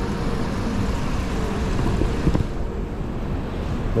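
Steady rushing hiss of water in a circular fountain pool. The hiss turns duller about two and a half seconds in.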